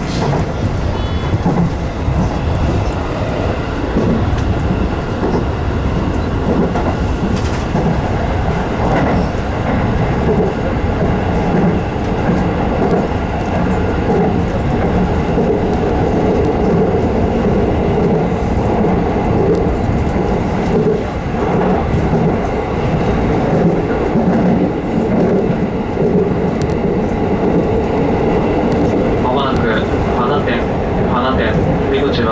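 JR West 207 series electric multiple unit running at speed, heard from the driver's cab: a steady rumble of wheels on rails with a humming tone underneath.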